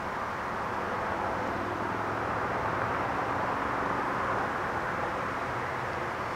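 Steady distant engine noise: a low, even rumble that swells slightly through the middle.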